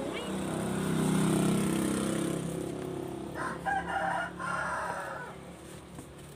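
A low rumble swells and fades over the first couple of seconds, like a passing vehicle. Then, about three seconds in, a rooster crows once, a broken-up call lasting about a second and a half.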